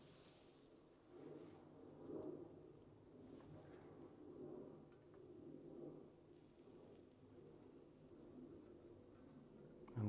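Near silence, with the faint hiss of flux and solder under a soldering iron tip drawn along the edge of a brass strip, clearest from about six and a half to eight seconds in.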